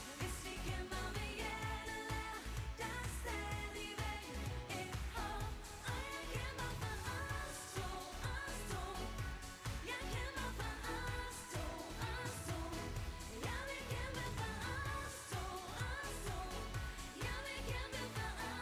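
Live pop performance: female voices singing a Danish-language dance-pop song into handheld microphones over a band backing with a steady beat.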